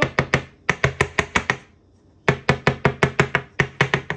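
A small aluminium cake mold filled with batter knocked rapidly against a stone countertop: two quick runs of about a dozen sharp knocks each, with a short pause between them.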